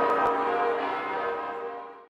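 Church bells ringing, the sound fading away through the second half.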